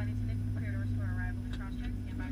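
Steady low hum inside the cabin of a Boeing 757 parked at the gate, with a person's voice talking indistinctly over it.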